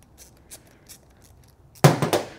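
Gloved hands handling a plastic spider fuel meter body assembly and its fuel lines: a few faint clicks, then a single sharp knock near the end.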